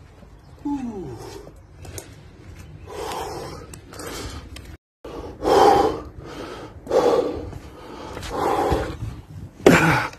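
A man breathing hard after heavy deadlifts: a falling groan about a second in, then loud heavy breaths roughly every second and a half. A sharp knock near the end comes from the camera being handled.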